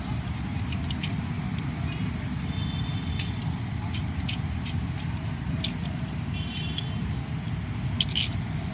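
Faint, scattered clicks of hard plastic toy parts as a cannon accessory is pressed onto the arm of a Transformers Megatron action figure, over a steady low background rumble like distant traffic.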